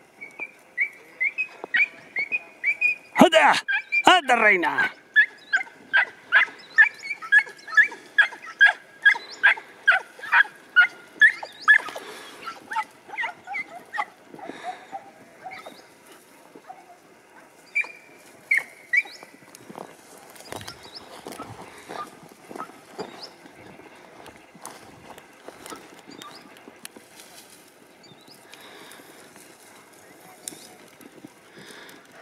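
Podenco hounds yelping in a fast, regular series, about two to three yelps a second, for roughly the first twelve seconds: the hounds giving tongue while working rabbit scent through the scrub. A louder call with falling pitch cuts in about three seconds in, and a couple of further yelps come later.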